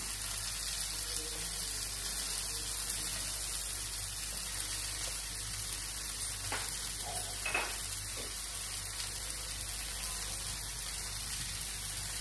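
Onions and tomatoes sizzling steadily in a frying pan while red masala powder is spooned onto them, with two or three light taps a little past the middle.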